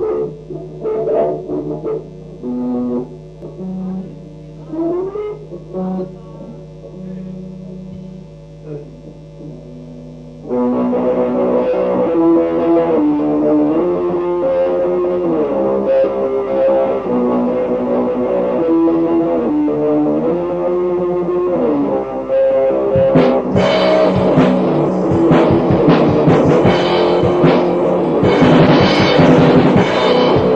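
Raw black metal demo recording played from cassette. It opens with a sparse, quieter passage of held low notes and a few sliding tones. About ten seconds in, a louder sustained distorted guitar riff steps through chords, and about 23 seconds in drums and crashing cymbals join for the full band.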